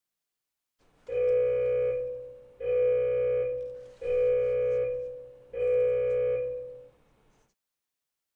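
Electronic countdown-timer alarm sounding four identical tones, each about a second long and about a second and a half apart, marking the end of the timed session.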